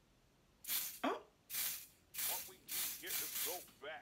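Dior spray foundation pumped from its bottle onto a makeup buffing brush: about four short hissing sprays, each under half a second, starting about half a second in.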